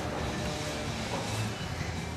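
Steady room noise of a shop floor: an even hiss with a low hum beneath it.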